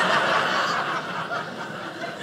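Audience laughing at a joke, the laughter dying down toward the end.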